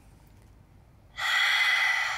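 A woman's loud, forceful exhale, starting a little past halfway and lasting over a second, as she presses through a pike push-up.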